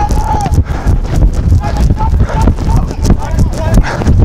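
Irregular knocking and rumbling noise at the microphone, with a few brief distant shouts from rugby players in open play.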